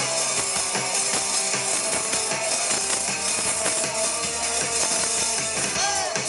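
Live rock band playing through a PA: electric guitars and drum kit at a steady, loud level, heard from among an open-air crowd.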